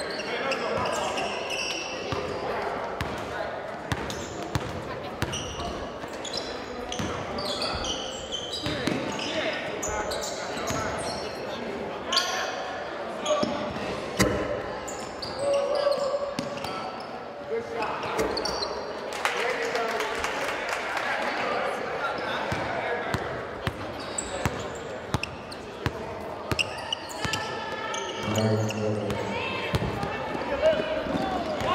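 Basketball being dribbled and bounced on a hardwood gym floor, short sharp knocks scattered through, under players' and spectators' voices calling out in a large, echoing hall.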